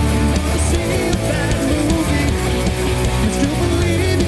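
A rock band playing live: electric guitar and bass guitar with a full band behind them, played steadily and loud.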